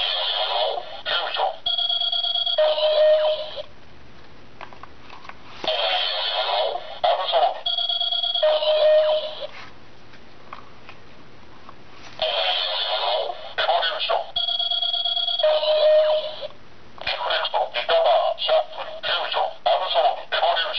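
Bandai DX Chalice Rouzer toy belt playing its electronic card-scan sounds through its small, tinny speaker as Rouse cards are swiped through it. Three times, about six seconds apart, it plays a short recorded voice call followed by steady electronic beep tones and a lower held tone. A further voice call starts near the end.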